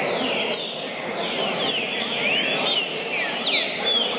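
Several caged trinca-ferros (green-winged saltators) singing, their short whistled phrases sliding up and down and overlapping one another, over a low murmur of voices.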